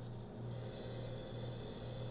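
A man sniffing wine with his nose in a wine glass: faint, steady breathing in through the nose over a low electrical hum.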